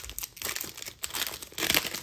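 Foil wrapper of a 2021 Panini Illusions basketball card pack crinkling as it is torn open by hand, in irregular crackles that are loudest near the end.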